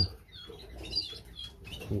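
Small cage birds, canaries and finches, giving short high chirps scattered through the pause, several in a row.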